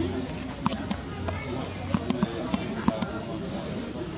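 People talking outdoors, with a scattered series of sharp clicks and taps over a low steady hum.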